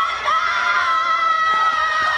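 Yosakoi dancers' loud, high-pitched shout, one long cry held steady at a single pitch as they run into formation.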